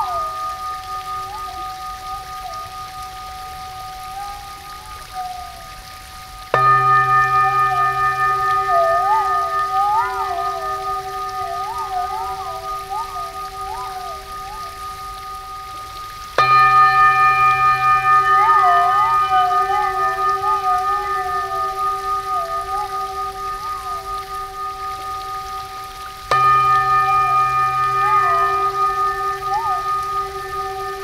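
Crystal singing bowls struck three times, about ten seconds apart, each strike ringing out in several steady tones that slowly fade. A wavering, gliding tone weaves over them.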